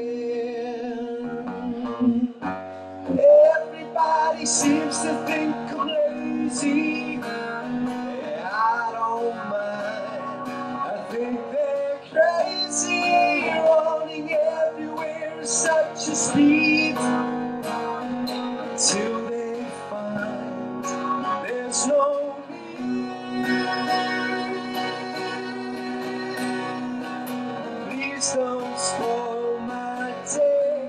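A man singing a song while strumming and picking an acoustic guitar, played live.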